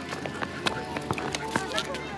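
Quick footsteps and a small dog's paws pattering on stone paving, a run of short irregular clicks, with voices in the background.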